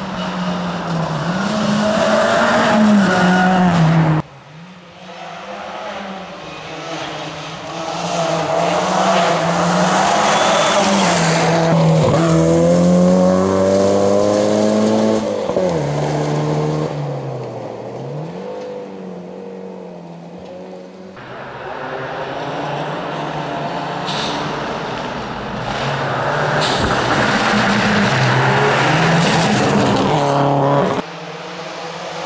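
Rally cars at full throttle on a gravel stage, engines revving hard and climbing through the gears, then easing and blipping down for corners, with tyres hissing on the loose gravel. Several separate passes follow one another, with abrupt cuts about four seconds in and about two-thirds of the way through.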